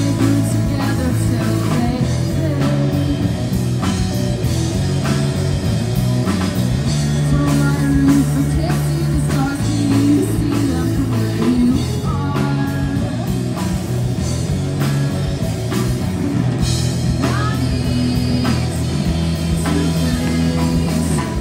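Live amplified rock band: a woman singing lead over two electric guitars and a drum kit, played through street PA speakers.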